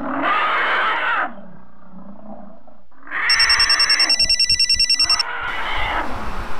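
A loud monster roar for about a second, falling away to a quieter, lower sound. About three seconds in, a telephone rings with a fast pulsing electronic ring, about nine pulses a second, for roughly two seconds.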